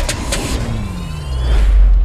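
Movie sound effects of an explosion and vehicles: a sharp hit just after the start, then a vehicle engine note falling in pitch over a deep rumble that swells to its loudest near the end.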